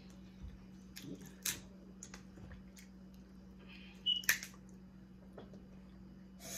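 Crab leg shells cracking and snapping as they are broken apart by hand: scattered short cracks and clicks, the loudest pair about four seconds in. A faint steady low hum runs underneath.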